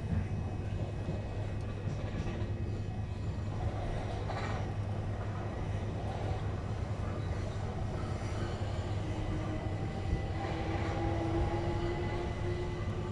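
Inside a Class 376 Electrostar electric multiple unit running at speed: a steady low rumble of the wheels on the track, with a faint whine that rises slightly in pitch near the end.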